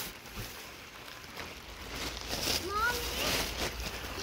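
Fabric canopy cover of a pop-up gazebo rustling as it is pulled over the metal frame, growing louder about halfway in. A faint voice can be heard behind it.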